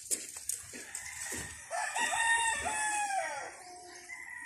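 A rooster crowing once, one drawn-out multi-part crow of about two seconds starting near the middle, after a few faint taps.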